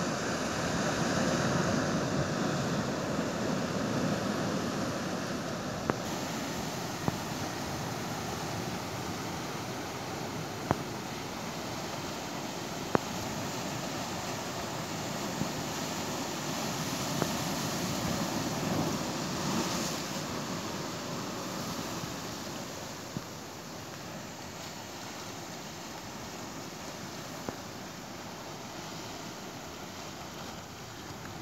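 Steady rushing of surf and wind on the microphone, swelling louder near the start and again past the middle, then easing. A few sharp clicks stand out over it.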